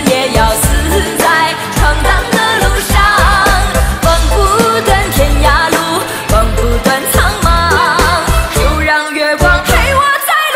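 A woman singing a Chinese pop song into a microphone over a backing track with bass and drums, her held notes wavering with vibrato. The bass drops out briefly near the end.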